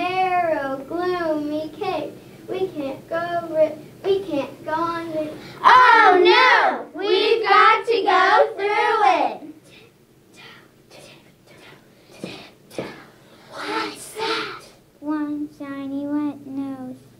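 A group of children chanting in unison, their voices sliding up and down in pitch. After about ten seconds the chant drops away to a quieter stretch with a few sharp taps, and the voices come back near the end.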